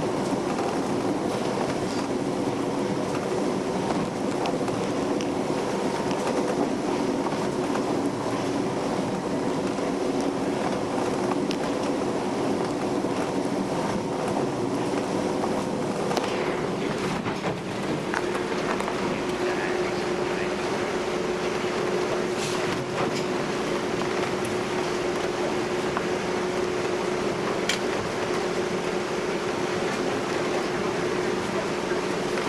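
A high-speed passenger ferry's engines drone steadily, heard from inside the cabin over the rush of water along the hull. A little past halfway the engine note shifts slightly to a steadier single hum.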